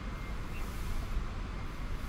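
Steady outdoor background noise: a low rumble with an even hiss above it and no distinct events.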